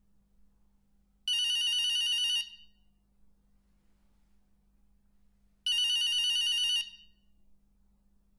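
A telephone ringing: two trilling rings, each a little over a second long, about four seconds apart, over a faint steady hum.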